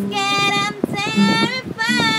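A female voice singing long held notes over a fingerpicked nylon-string classical guitar.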